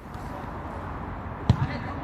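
A football kicked once: a sharp thud about a second and a half in, with a smaller knock just after it.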